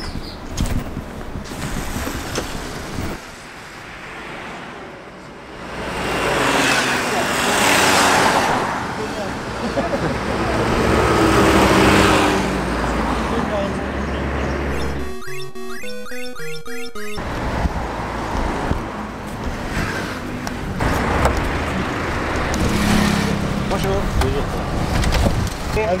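City street traffic: cars passing on the road, their noise swelling and fading several times, with voices in the background.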